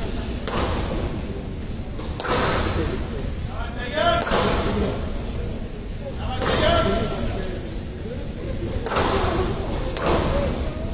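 A squash ball being struck hard with rackets about every two seconds, five sharp cracks in all, each ringing briefly off the court walls.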